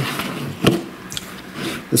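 Handling noise in a pause of speech: one short, sharp knock about two-thirds of a second in, a fainter click a little later, and light rustling.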